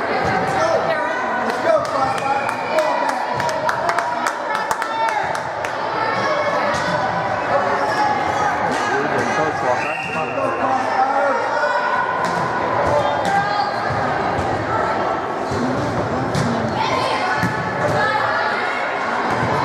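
Voices of players and spectators calling and chattering in a gymnasium, with the sharp smacks of a volleyball being served, passed and hit during a rally.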